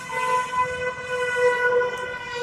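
A horn blast: one long steady note held for over two seconds, then cut off sharply.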